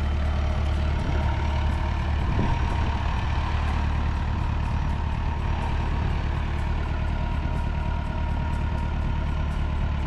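Massey Ferguson 175 tractor's engine running steadily as the tractor drives off along a dirt track.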